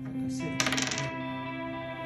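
A single game die rolled onto a wooden table, clattering briefly about half a second in. Soft background music with steady held notes plays throughout.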